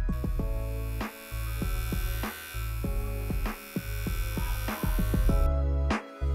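Cordless pet hair clipper buzzing steadily under background music; the buzz cuts off about five and a half seconds in.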